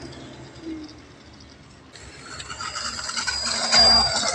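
Motor and propeller of an RC 3D Extra aerobatic model plane taxiing: a high, thin whine that comes in about halfway and grows louder, rising slightly in pitch, as the plane nears.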